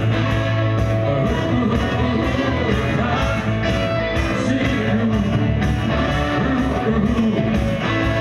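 Rock band playing live with a singer: electric guitars and drums on a steady beat.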